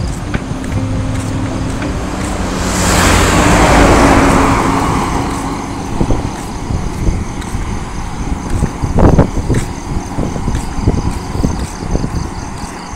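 A car passing close by on the road, its tyre and engine noise swelling to a peak about three to four seconds in and falling away as it goes. Irregular knocks and thumps follow in the second half.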